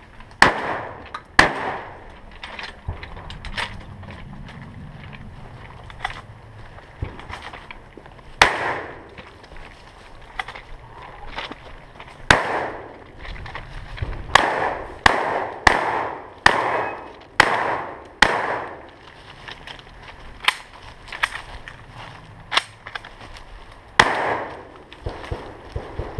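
Gunshots fired one at a time at an uneven pace, each a sharp crack with a short echo. There is a quieter stretch between about two and eight seconds in, and the shots come fastest between about twelve and twenty-four seconds in.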